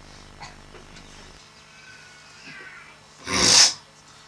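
A single loud, breathy burst of air close to the microphone, about half a second long, a little after three seconds in, against low room noise.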